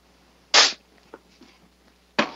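A man's short, sharp burst of breath about half a second in, followed by a couple of faint clicks.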